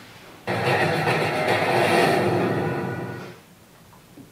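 Audio of a boxing highlights video playing from a computer: a full, busy sound that starts suddenly about half a second in and fades away after about three seconds.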